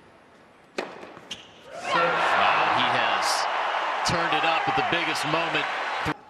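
Tennis racket strikes a ball on a serve about a second in, with a second strike half a second later. Then a crowd in an arena breaks into loud cheering and shouting as the point is won, with a couple of thuds inside the cheer, before it cuts off suddenly at the end.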